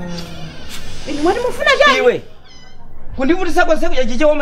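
A person's voice in two drawn-out, wavering vocal phrases: one about a second in, the other starting near the end.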